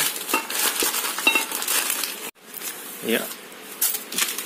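Newspaper and plastic parcel wrapping crinkling and tearing as it is pulled open by hand; the sound cuts off suddenly about two seconds in, and quieter rustling follows.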